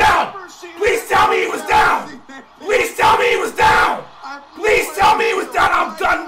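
A man yelling and screaming wordlessly in dismay, a string of about ten loud, drawn-out cries in quick succession.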